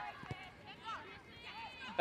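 Faint, distant high-pitched voices of women footballers calling out across the pitch during play, with one short knock about a third of a second in.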